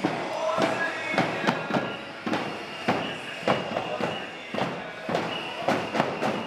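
Drums beaten in a steady march rhythm, about two beats a second, over the voices of a crowd.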